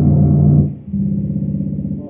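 Low, sustained synthesizer notes in an improvised piece. A loud low note sounds for most of the first second, then gives way to a steady held tone with a fast pulsing wobble in level.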